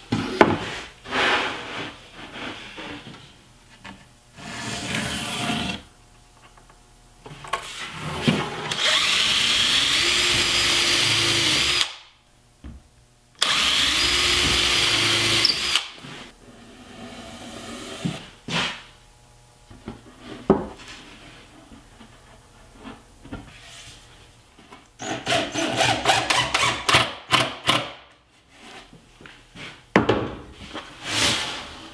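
Cordless drill driving screws into plywood in two long runs of a few seconds each; the motor pitch rises and then holds steady. Knocks from plywood panels being handled lie in between, and a run of quick clicks comes near the end.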